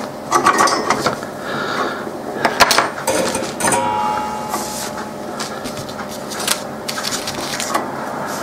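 Workbench handling noise: a run of irregular light clicks and small knocks as metal tweezers and soldering tools are picked up and put down on the bench.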